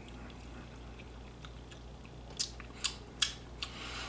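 Wet mouth sounds of someone tasting a sip of tequila: about five short lip-and-tongue smacks in the second half, after a quiet start.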